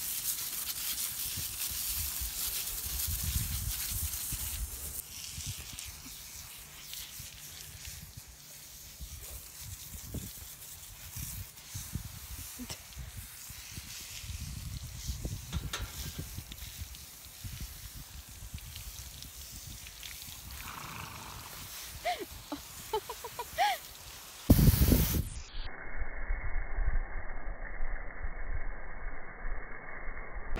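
A garden hose sprays water onto a horse's legs and the dirt for the first few seconds. Wind then buffets the microphone, with scattered handling sounds and a loud bump near the end.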